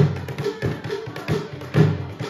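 Double-headed wooden barrel drum with hide heads, played by hand and beating a steady dance rhythm: deep beats about every two-thirds of a second, with sharper taps in between.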